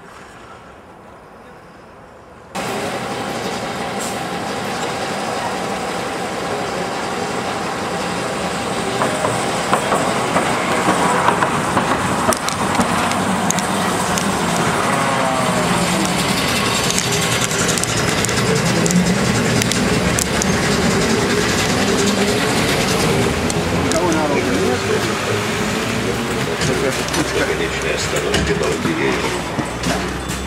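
PTMZ LM-2008 low-floor tram running close by: wheel-on-rail and motor noise, with whining tones that rise and fall as it moves. It starts suddenly about two and a half seconds in and stays loud from then on.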